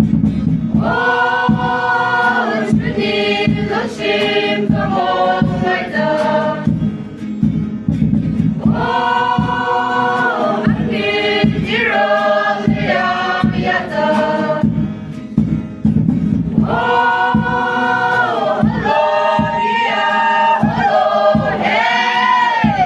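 A group of women singing together as a choir, in phrases of long held notes with short breaks between them.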